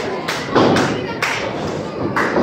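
Sharp slaps and thuds during a pro wrestling bout, the loudest about half a second in, with voices shouting in a hall.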